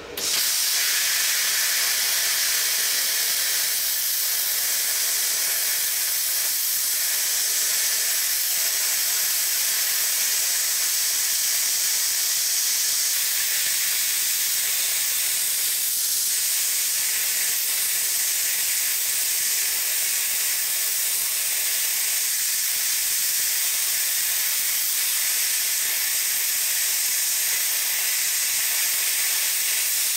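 Plasma cutter set to 50 amps cutting half-inch steel plate: the arc strikes just after the start and the torch then keeps up a steady hiss of arc and air jet. It struggles a little to get through the plate.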